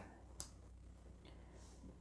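Near silence: low room hum, with one faint click about half a second in, as oracle cards are handled on a table.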